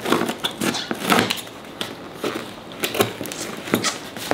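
Scissors cutting through the packing tape along a cardboard box's seam: an irregular run of snips and clicks as the blades bite through tape and cardboard.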